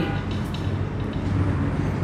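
Steady low hum with an even background hiss: constant room noise, with no distinct event.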